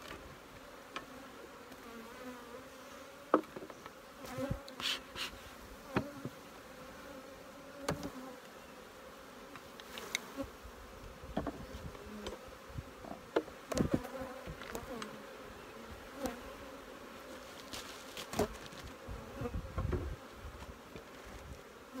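Honeybees buzzing over an open hive in a steady hum, with scattered sharp knocks and clicks of wooden hive boxes and frames being handled. The loudest knock comes about three seconds in.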